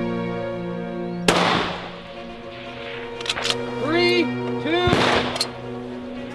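Two rifle shots from a scoped bolt-action precision rifle, about three and a half seconds apart, each with a short echo, with a few sharp clicks between them. Background music with sustained tones plays throughout.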